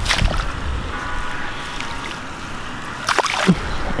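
Peacock bass splashing into the shallow water at the bank edge as it is released, once at the start and again about three seconds in as it kicks away.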